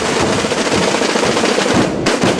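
Calanda Holy Week drum group, snare drums (tambores) with bass drums (bombos), playing a loud, fast, unbroken roll. Near the end the roll breaks back into separate beats.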